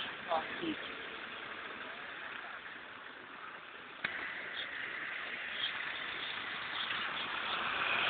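Bus station street noise: buses and traffic running at low speed. There is a sharp click about four seconds in, and a hiss that grows steadily louder toward the end.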